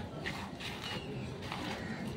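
A few short bird calls, one with a brief pitch glide, over a steady low outdoor background.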